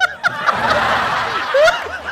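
People laughing: a burst of breathy, open laughter, with a short vocal sound at the start and a rising laughing voice near the end.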